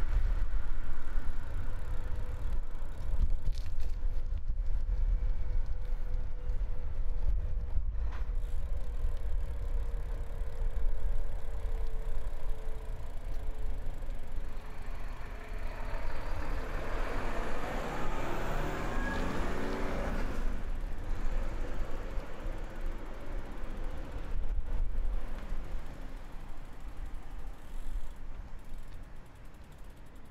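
Road traffic beside a suburban road over a constant low rumble of wind on the microphone. A faint hum sinks slowly in pitch through the first half, and a vehicle passes just past the middle, its noise swelling and then fading.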